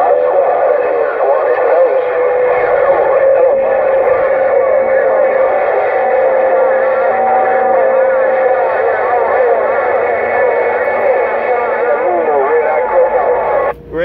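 Uniden Grant XL CB radio receiving a crowded channel 6 through its speaker. Many strong stations key up at once, so voices pile on top of each other with steady whistling tones from the clashing carriers, and no single voice comes through clearly. It is a continuous, loud jumble with no pause.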